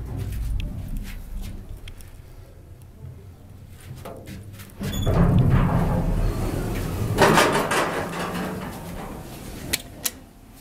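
A 1972 Hitachi Build-Ace A rope-driven freight elevator: a low hum as the car travels, then about five seconds in its two-panel side-opening door slides open noisily for several seconds. A sharp click near the end as the landing button is pressed.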